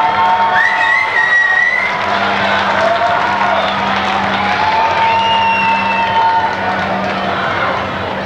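Arena crowd cheering and shouting at a live wrestling match, many voices at once, with several individual long yells and calls rising above the din.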